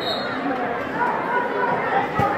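Indistinct chatter of several people talking at once, with no words clear.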